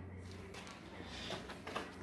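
Faint room tone: a steady low hum with a few soft taps and rustles.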